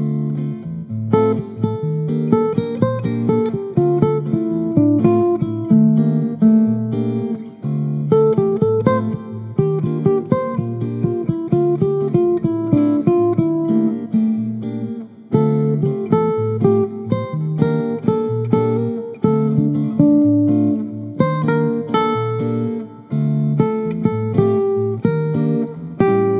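Instrumental acoustic guitar music: a quick, continuous run of plucked notes with no singing.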